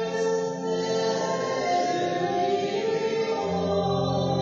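Pipe organ music with sustained chords, accompanied by voices singing.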